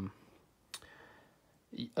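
Near silence in a pause in speech, broken by one sharp click about three quarters of a second in.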